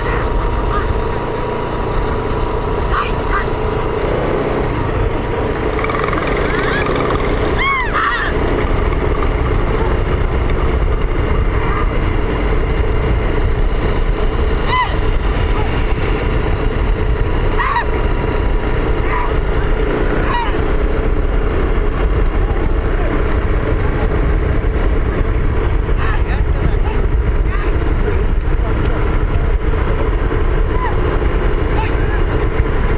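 Steady rumble of a moving vehicle's engine and wind on the microphone, with a few short rising-and-falling cries about a quarter of the way in and again around the middle.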